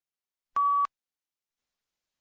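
A single short electronic beep, one steady tone lasting about a third of a second, about half a second in. It is the prompt tone that cues the start of a read-aloud response.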